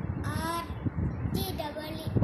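A young boy's voice chanting in a drawn-out, sing-song way: two long held syllables about a second apart, the kind of recitation used when spelling out number names letter by letter.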